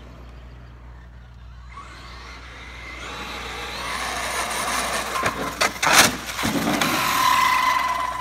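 Traxxas X-Maxx 8S electric RC monster truck with a 4985 1650kv brushless motor driving up an asphalt street toward the microphone: its tyre and motor noise grows louder over several seconds. A few sharp knocks come about five to six seconds in, the loudest near six seconds, and a steady high whine is heard near the end as the truck arrives close by.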